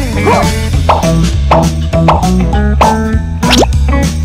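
Upbeat children's background music with a steady beat, overlaid with cartoon sound effects: quick rising and falling pitch slides and plops.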